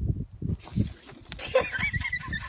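Air squealing out through the stretched neck of an inflated rubber balloon, a wavering high-pitched whine that starts about one and a half seconds in, after low rumbling.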